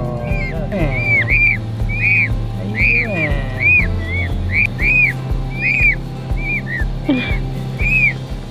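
Peafowl chicks peeping: short high arched cheeps, rising and falling, repeated over and over, over background music with a steady low beat.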